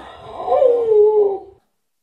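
A woman's high-pitched, wavering vocal cry of shock, sliding down in pitch and breaking off about one and a half seconds in.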